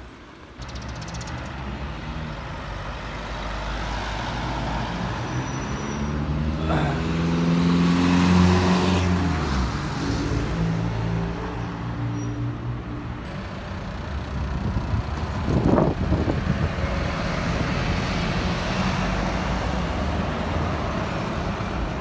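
Road traffic passing on a city street, with a steady mix of engines and tyres. One vehicle passes loudest about eight to nine seconds in, its engine note falling as it goes by, and another brief pass comes near sixteen seconds.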